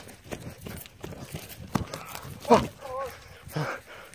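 Hurried running footsteps on forest ground and knocks from a phone jolting in hand. From about two and a half seconds in come a few short, breathless cries from the runners.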